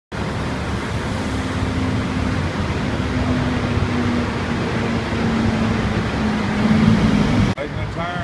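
Steady road traffic noise with a continuous engine hum that rises a little near the end, cutting off suddenly about seven and a half seconds in.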